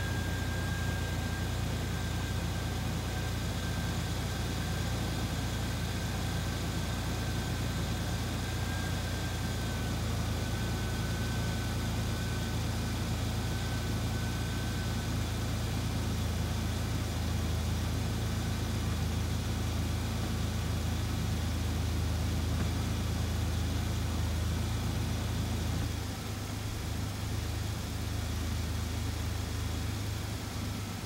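Car engine idling steadily in the open engine bay with the air conditioning on maximum cooling. A faint high whine fades out about halfway through, and the engine hum drops slightly in level near the end.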